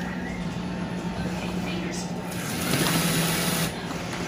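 Robot vacuum's motor and brushes running with a steady hum under a sitting child's weight, straining and barely able to move. The hum swells slightly for about a second near the end.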